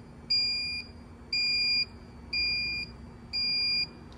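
Evolution auto-folding power wheelchair beeping a warning as it folds itself by remote control: four high, even beeps, about one a second, each about half a second long.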